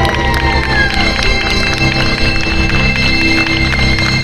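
Recorded dance music playing through a stage PA speaker, with held notes and a steady bass line.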